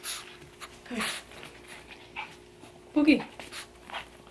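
Small dogs whining as they are let out of their crate, with a short falling whine about a second in and a louder one near the end. Hissy, breathy panting and sniffing comes in between.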